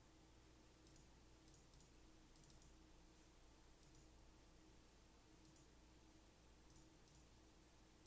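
Near silence with faint, scattered computer mouse clicks, about nine in all, some in quick pairs like double-clicks, over a faint steady hum.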